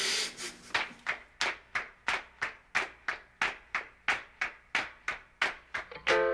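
Steady rhythmic percussion: short scrape-like hits, about three and a half a second, each dying away quickly.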